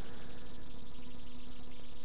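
A steady low hum over an even background hiss, with no distinct event.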